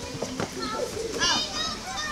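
Children's voices chattering and calling over one another, with a louder high-pitched call about a second in.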